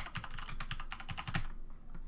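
Fast typing on a computer keyboard: a quick run of keystrokes that stops about a second and a half in.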